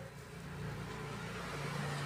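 A motor vehicle engine running: a low hum that grows louder toward the end.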